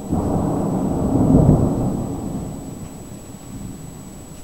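Thunder rolling from a lightning strike of the approaching storm: a low rumble that starts suddenly, swells to its loudest about a second and a half in, then dies away over the next couple of seconds.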